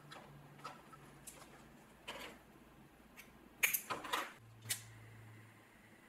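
Faint ticks and rustles of hands working waxed thread on a leather-wrapped grip, then, about two-thirds of the way in, a quick cluster of louder scraping clicks as a flint lighter is struck and lit, followed by a faint steady hum.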